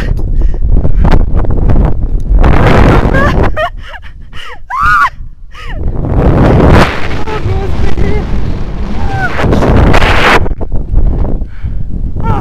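Heavy wind rushing over a body-mounted camera's microphone as a rope jumper falls and swings on the rope. Several short high yells from the jumper cut through, rising and falling, a few seconds in and again later.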